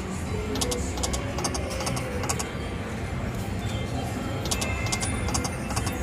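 Great Luck Great Profit video slot machine spinning its reels to the game's music, with clusters of quick clicks about a second in, around two seconds in and near the end. A steady casino hum lies underneath.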